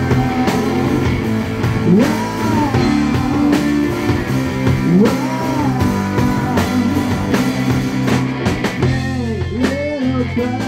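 Live indie rock band playing with bass guitar, drums and guitar. A wordless rising vocal wail ('whoa') repeats about every three seconds.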